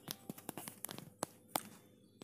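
Faint, irregular clicks and light crackling at a hot nonstick appe pan of cooking vadas, about ten sharp ticks in two seconds.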